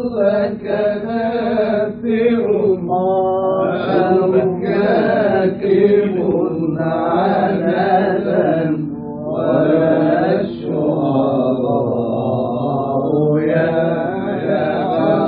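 Male munshid singing an Egyptian Islamic tawshih (religious chant) in an old recording with a narrow frequency range, holding long, wavering melismatic notes. A steady low tone sounds underneath.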